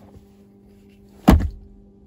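A single dull thunk about a second and a quarter in, over a faint steady hum in the car's cabin.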